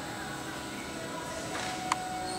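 Indoor arena background of low voices and music with held steady tones, broken by one sharp knock near the end.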